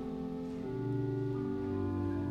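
Organ playing slow, sustained chords, the held notes changing every second or so.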